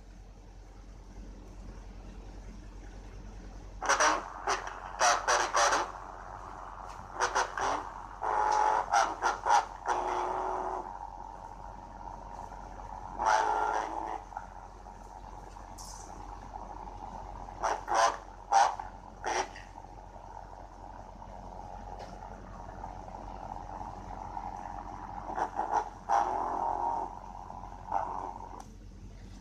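A screen recording's own audio played back through laptop speakers and picked up again by a second microphone: muffled, distorted bursts coming every few seconds with pauses between them, over a steady hum, with a lot of background noise.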